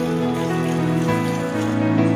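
Background music with sustained chords; the chord changes about a second in.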